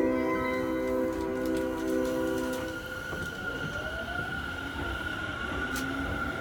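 Railway station departure melody (hassha melody) playing on the platform, a chiming tune that ends about halfway through. A steady high tone carries on after it.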